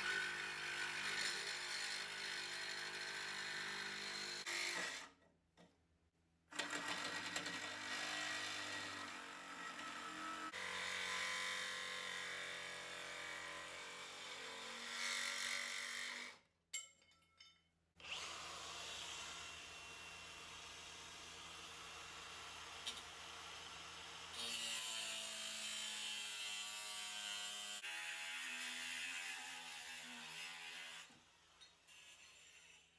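Milwaukee reciprocating saw cutting through a steel frame body-mount bracket, running in long stretches with two short stops. Near the end an angle grinder's cut-off wheel cuts into the metal.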